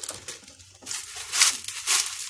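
Clay pebbles rattling and scraping in a thin plastic pot as a hand rummages through them, in irregular rustling bursts that are loudest about halfway through and near the end.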